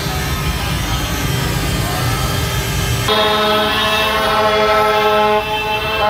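Street noise of motorcycle engines and a crowd, with the hiss of a ground fountain firework. About three seconds in, loud blaring of several plastic toy trumpets held at steady pitches together, one stopping near the end.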